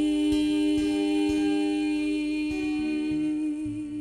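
A voice holds one long hummed final note, wavering slightly near the end, over softly plucked acoustic guitar with a few low bass notes.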